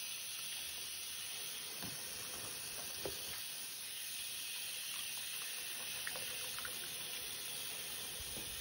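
Bathroom faucet running a thin stream of cool water into a towel-lined sink: a steady hiss, with a few faint knocks as a denture brush and dentures are rinsed under it.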